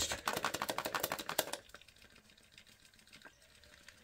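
Handheld static grass applicator shaken over a model railway layout, giving a fast run of sharp clicks, roughly ten a second, that stops about a second and a half in. After that only a few faint ticks remain.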